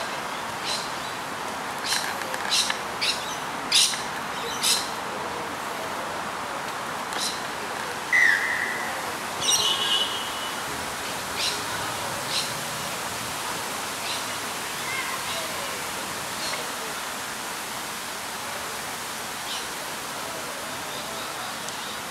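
Open-air sports-field ambience: a steady hiss with sharp clicks and short chirps, busiest in the first five seconds. Two brief whistle-like tones come about eight and ten seconds in.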